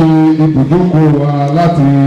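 A man's voice chanting into a handheld microphone, each syllable held on a steady pitch, then sliding to the next.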